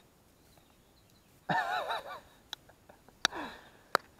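A short, wavering whistle-like call about one and a half seconds in, followed by a few sharp clicks, over otherwise quiet surroundings.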